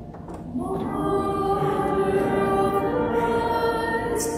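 Voices singing a hymn in held notes, coming in about half a second in after a brief lull.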